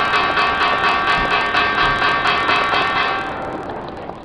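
Short electronic outro jingle with a quick, even pulse of pitched notes, fading out near the end.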